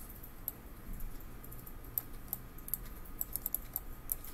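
Computer keyboard and mouse clicks: scattered light taps with a quick flurry near the end, over a low steady hum.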